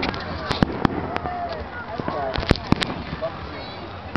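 Aerial fireworks shells bursting overhead: a string of sharp bangs, with three close together about two and a half seconds in.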